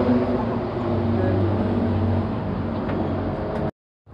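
Street traffic noise with a vehicle engine running close by, a steady low hum under the general din. It breaks off suddenly near the end.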